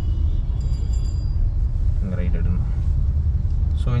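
Steady low rumble of a car's engine and road noise heard inside the cabin as the car moves slowly.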